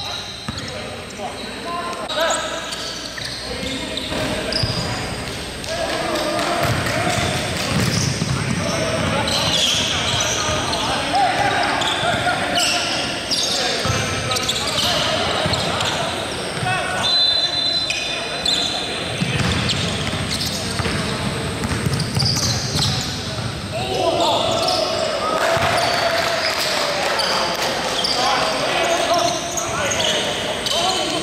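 Indoor basketball play: a basketball bouncing on a hardwood gym floor, with sneakers squeaking briefly and players' voices, all echoing in a large gym.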